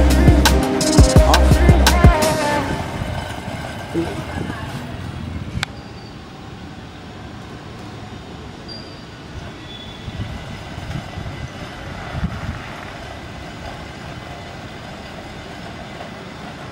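Background music with a beat fades out over the first three seconds, leaving a steady, even rushing noise with a few faint ticks.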